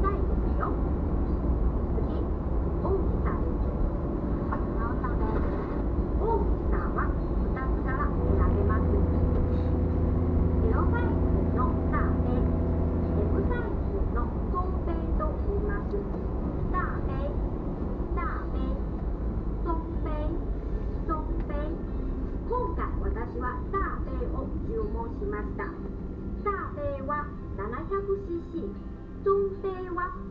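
Steady low road and engine rumble inside a moving car's cabin, with a person talking over it throughout, from audio playing in the car. A steady hum sits on top for a few seconds about a third of the way in.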